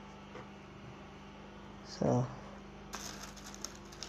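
Cloth being handled: fabric rustling and sliding faintly as hands spread and fold it on a table, more from about three seconds in, over a steady low hum. A short vocal sound breaks in about two seconds in.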